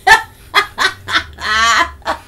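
A woman's loud, hearty laughter in a string of short bursts, with a longer high peal near the end.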